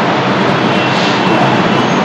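Loud, steady rushing background noise with no distinct events.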